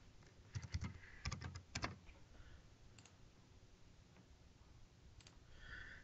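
Faint typing on a computer keyboard: a quick run of keystrokes in the first two seconds or so while a password is entered, then near silence broken by a couple of single clicks.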